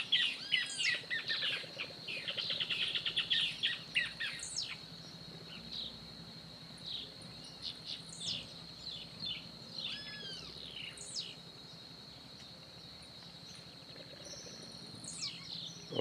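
Several wild birds calling over a steady high insect buzz: a quick run of rapid chirps in the first few seconds, then scattered whistled notes, some sliding down from high, through the rest.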